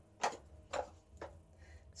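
Three faint footsteps, evenly spaced about half a second apart.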